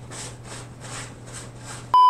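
Soft repeated noises about four a second, then near the end a sudden short steady electronic beep, the test tone of a colour-bars video transition.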